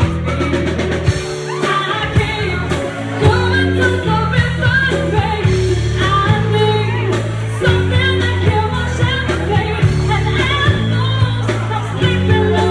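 Live band playing a pop song, with a woman singing lead over bass guitar, electric guitar, keyboards and drum kit, and a steady drum beat.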